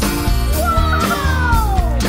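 Upbeat guitar background music with a beat. Over it, from about half a second in, a cartoon sound effect plays: a whistle-like tone that glides steadily down in pitch for about a second and a half.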